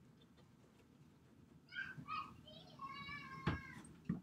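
Faint high-pitched, wavering cries, several short ones in a row starting a little under halfway through, with a single sharp click near the end.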